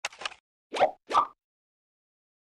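Logo-animation sound effects: a few quick clicks, then two short cartoon-style pops about a second in, the second a little higher in pitch.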